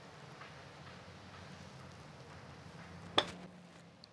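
A golf club striking a ball on a chip shot played off an indoor floor: one sharp click about three seconds in, over a faint low room hum.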